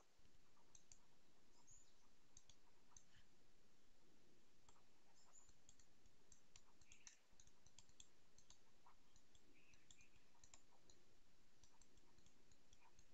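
Near silence with faint, irregular small clicks and taps of a stylus writing on a pen tablet.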